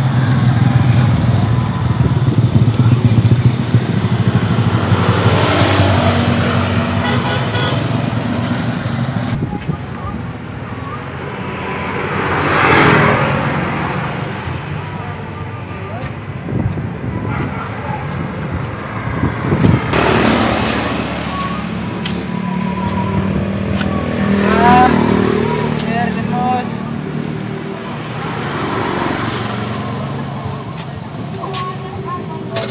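Street traffic: motorcycles and other small vehicles passing one after another, each swelling and fading, over a steady low engine hum.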